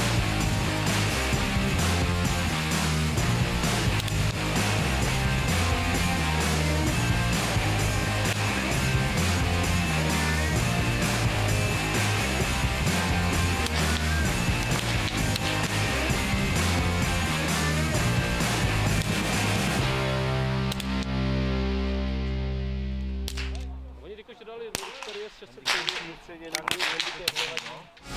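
Background music with a steady beat that fades out about three-quarters of the way through. It is followed by a handful of sharp, short cracks: rifle shots on a shooting range.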